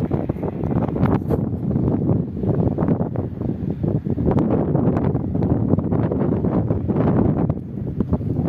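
Wind buffeting the microphone: a loud, gusty rumble with scattered small rustles and knocks.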